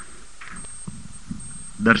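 A pause in the speech with only faint background hiss and low hum, and a voice starting again just before the end.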